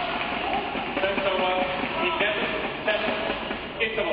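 Arena crowd cheering and clapping, many voices shouting at once over a dense wash of noise, with a few sharp claps standing out in the second half.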